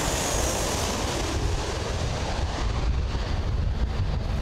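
Jet airliner passing low overhead on landing approach: a steady engine roar with a heavy low rumble and a high whine that falls in pitch over the first second or so, with wind on the microphone.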